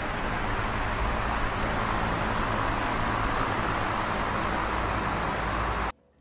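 A steady rushing noise with a low rumble, at an even level, that cuts off abruptly near the end.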